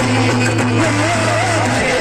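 A man's voice in a devotional bhajan, amplified through a microphone and PA, over a steady low drone from the accompaniment.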